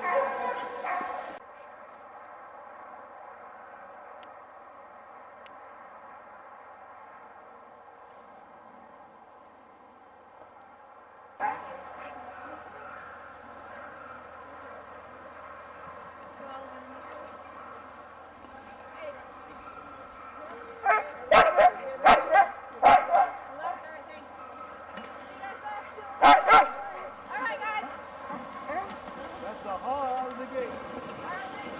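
Many sled dogs yipping, barking and whining together in an excited chorus, with clusters of loud close barks about two thirds of the way in and again near the end.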